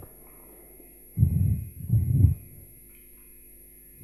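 Two short, low, closed-mouth hums from a man's voice on the microphone, about a second and a half and two seconds in, over a faint steady hum of the sound system.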